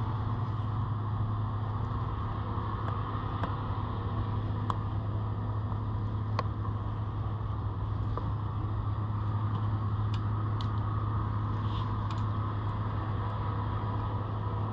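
A steady low mechanical hum, with a few faint clicks as gloved hands pick thorns out of a knobby fat-bike tyre.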